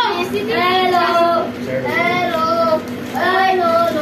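A child singing a tune in long held notes, a few phrases in a row.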